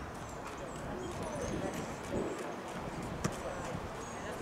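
Distant voices of youth soccer players and onlookers with scattered light knocks, and one sharp thump about three seconds in as the soccer ball is kicked.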